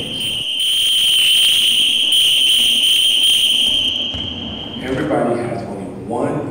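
A long, steady, high-pitched whistle blast that cuts off about four seconds in, followed by a man's voice near the end.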